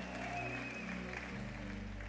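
Soft background music of sustained keyboard chords, the harmony changing about a second and a half in.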